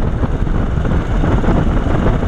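KTM 690's single-cylinder engine running steadily under way on a gravel road, mixed with steady wind rush on the microphone.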